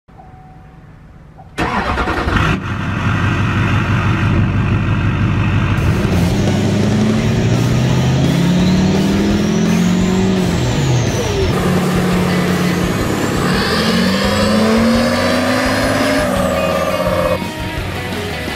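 Duramax turbodiesel pickup accelerating hard, its engine note climbing and dropping back in steps as it shifts through the gears, with a turbo whistle that rises and falls. The engine sound comes in suddenly after a near-quiet opening of about a second and a half.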